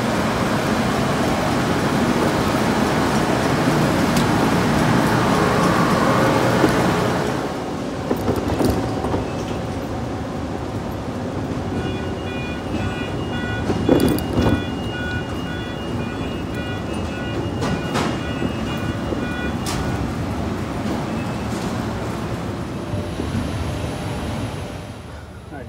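Loud steady machinery noise in an airport baggage-handling hall, dropping to a quieter background about seven seconds in. From about twelve to twenty seconds a repeating electronic beep of several tones sounds over it, with a few sharp clicks.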